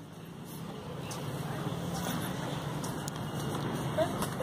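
A steady low hum with a rushing noise, building slowly over the first two seconds and then holding.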